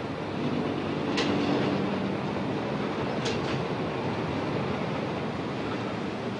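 Diesel shunting locomotive running with freight wagons: a steady running noise of engine and wheels on the rails. A sharp metallic clack comes about a second in, and another about three seconds in.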